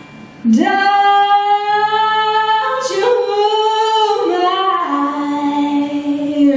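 Female vocals singing long, held notes into a microphone, entering loudly about half a second in and moving to a new pitch every second or so.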